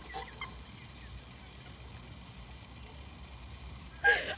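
Quiet outdoor background with a steady low rumble, and a faint stifled giggle just after the start.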